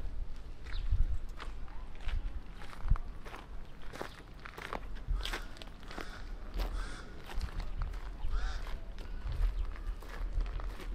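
Footsteps on a gravel-strewn dirt road: an irregular run of steps from people walking, with a low steady rumble underneath.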